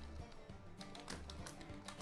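Faint keystrokes on a computer keyboard, a few scattered clicks while code is typed.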